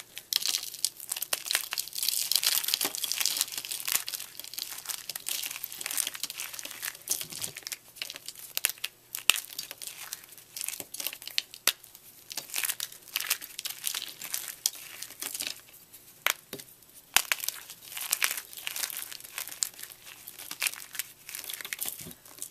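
Blocks of gym chalk crushed and crumbled between the fingers: an irregular run of dry crackling and crunching with sharp snaps, pausing briefly now and then.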